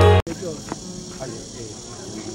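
Music cuts off a moment in, leaving outdoor ambience: a steady high-pitched chirring of insects, with faint distant voices underneath.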